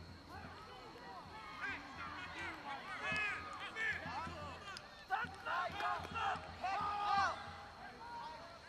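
Overlapping voices of spectators and players calling and talking at a football field, with no words clear, loudest in the second half.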